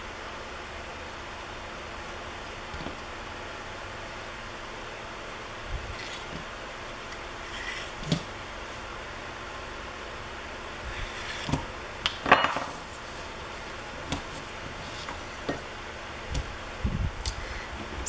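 Steady room hum with scattered soft knocks and rubbing as strips of trimmed clay are pulled off the edge of a slab and handled on a wooden worktable, loudest about twelve seconds in.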